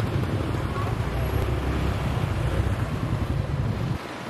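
Steady low rumble of riding a motorcycle through street traffic: wind buffeting the camera's built-in microphone over the motorbike's engine and traffic noise. The rumble drops away sharply at the very end.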